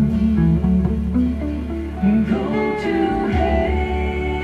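Semi-hollow electric guitar being played: a line of picked notes, with a few short pitch bends, over a sustained low bass note.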